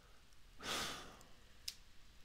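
A man's sigh: one breathy exhale close to a headset microphone, a little over half a second in and fading away, followed by a small sharp click.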